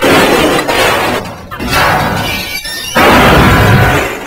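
Loud crashing and smashing sound effects in three bursts about a second apart, with breaking and shattering noise.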